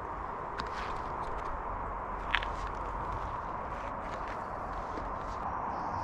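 Light footsteps on a dirt woodland path, with a few faint clicks over a steady outdoor background hiss.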